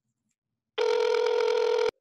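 A phone-call ringing tone: one steady ring a little over a second long that starts partway in and cuts off suddenly.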